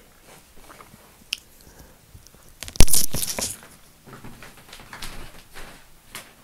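Handling and movement noise as a person gets up and moves about: a sharp knock a little under three seconds in, then a brief crunchy rustle, with faint scuffs and clicks before and after.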